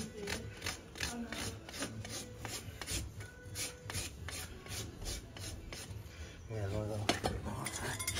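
Farrier's hoof rasp filing down the overgrown toe of a pony's front hoof, in steady back-and-forth strokes of about three a second. The rasping stops about seven seconds in with a sharp knock.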